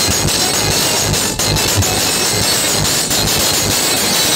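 Hard-bass DJ music played very loud through a stacked wall of speaker cabinets: rapid, heavy bass beats under a harsh, noisy wash that fills the recording.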